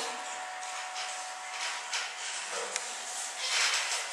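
Room tone: a steady hiss with a faint steady tone, and a single short click about three seconds in.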